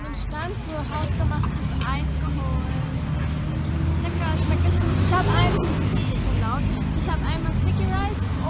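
Roadside street sound: a steady low rumble of traffic with people talking close by, the traffic swelling briefly about five seconds in as a vehicle goes past.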